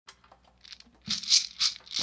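Shaker rattling in an even rhythm, about three shakes a second, starting about a second in.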